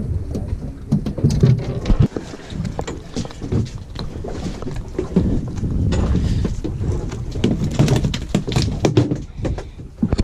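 Wind buffeting the microphone on a small boat, with irregular knocks, rustles and fabric rubbing against the camera as a freshly caught whiting is handled.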